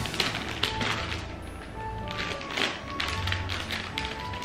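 Gift wrapping paper being picked at and torn open in short, irregular rips and crinkles, over background music.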